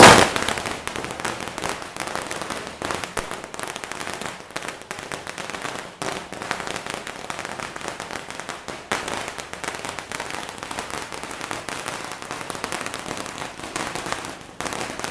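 A string of firecrackers going off, a dense, rapid, continuous crackle of small pops, loudest in a burst at the start.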